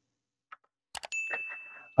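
Subscribe-button animation sound effect: a few short clicks, then about a second in a single high bell ding that rings on and slowly fades.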